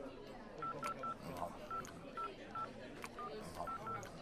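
Mobile phone keypad beeps: short tones all on one pitch, about ten of them at an uneven typing pace, over faint background murmur of voices.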